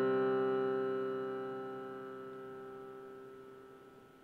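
Background music: the last piano chord of the score rings out and fades slowly away, with no new notes.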